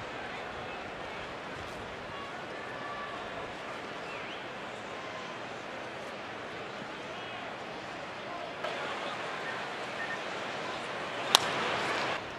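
Ballpark crowd murmuring steadily, a little louder near the end, then one sharp crack of a wooden bat meeting the pitch about a second before the end: a weakly hit ground ball.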